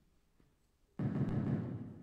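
A sudden dull thump about a second in, with a rumbling noise that fades over about a second.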